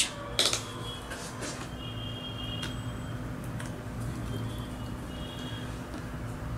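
Quiet room tone: a low steady hum, with a few small clicks about half a second in and faint brief high tones later.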